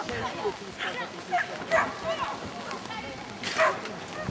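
A dog barking repeatedly in short, sharp barks as it runs an agility course, with a louder burst near the end.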